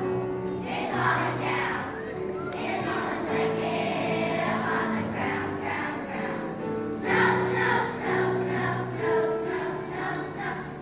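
Elementary-school children's choir singing, with steady held accompaniment notes underneath.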